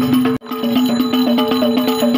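Rebana frame drums played in a fast, even beat over a steady pitched tone, as procession music. The sound cuts out for a moment about half a second in, then picks up again.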